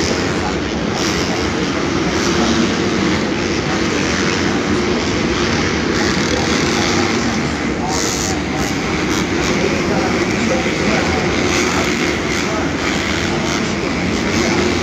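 Supercross dirt bikes running and revving around the track, a steady engine drone heard from the stands of a domed stadium, mixed with crowd chatter.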